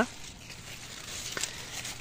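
Faint rustling, with one short soft click about one and a half seconds in.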